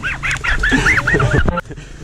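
Muttley's cartoon snicker laugh as an edited-in sound effect: a quick run of short wheezy snickers that stops about a second and a half in.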